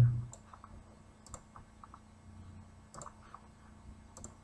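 A few faint computer mouse clicks, two of them quick double-clicks.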